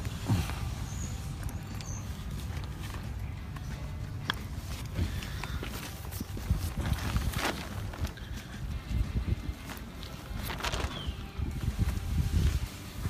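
Woven polyethylene tarp rustling and crinkling as it is handled, with a few sharp crackles over a low rumble of handling noise on the microphone.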